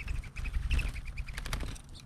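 Mourning dove wings flapping in flight close by, giving a rapid series of high twittering whistles over a low fluttering rumble, with a few sharp clicks about a second and a half in.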